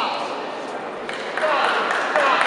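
Indistinct chatter of spectators and officials echoing in a large sports hall, with a few short high-pitched squeaks, one falling in pitch right at the start.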